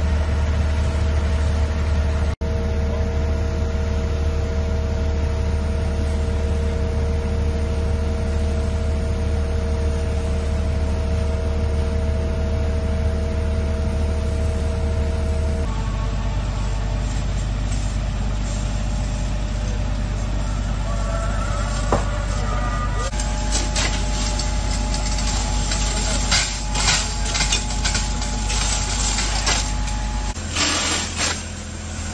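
Fire engine running at a building fire: a steady low engine hum, joined in the second half by hoses spraying water, with bursts of hissing in the last few seconds.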